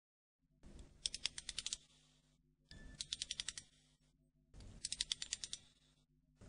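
Three quiet runs of rapid clicks, each about ten clicks in under a second and led by a soft rustle, repeating about every two seconds.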